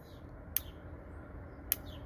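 Two short, sharp clicks a little over a second apart, part of a regular clicking that repeats at about that interval.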